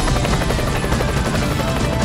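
Helicopter rotor sound effect, a rapid even chopping, layered over dramatic theme music, with a slow falling tone running underneath.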